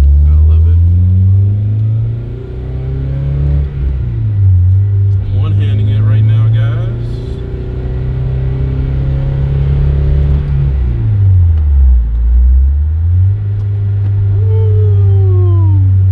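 Honda Civic Si's K20 four-cylinder engine heard from inside the cabin as the car accelerates through the gears: the engine note rises, drops at a gearshift about four seconds in, climbs again for several seconds, falls away around eleven seconds, then settles to a steady cruise.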